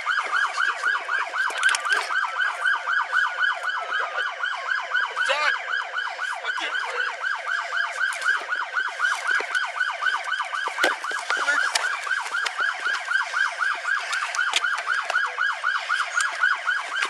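Police car siren in yelp mode, sweeping up and down rapidly at about four sweeps a second without a break. A few sharp knocks come through near the end.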